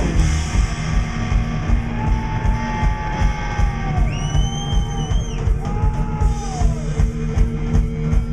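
Psychobilly band playing live: a steady beat on drum kit and upright double bass under electric guitars, with held notes that bend up and down in the middle of the passage. No words are sung here.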